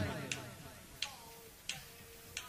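Three sharp clicks about two-thirds of a second apart, a drummer's stick count-in before a cumbia band starts a song, following the fading tail of a man's voice over the PA.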